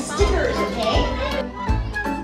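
Children's voices chattering and calling out over background music with a steady bass beat.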